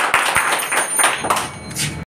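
Audience applauding, many hands clapping together; it thins briefly near the end, then picks up again.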